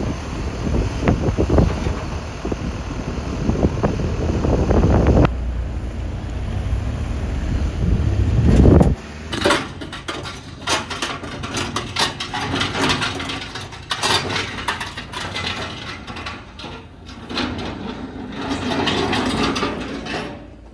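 For about nine seconds, wind rumbles on the microphone over a recovery truck driving along a street. It cuts off suddenly and gives way to a run of scattered knocks and clicks.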